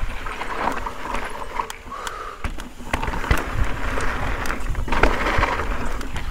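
Mountain bike rolling over rocky dirt singletrack: tyres crunching over gravel and rock, with frequent sharp clicks and knocks as the bike rattles over the rocks, over a steady low rumble.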